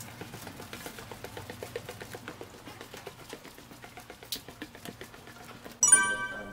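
Footsteps along a hard corridor floor, with many small rapid clicks and taps. Near the end a loud electronic chime of several bright ringing tones sounds suddenly.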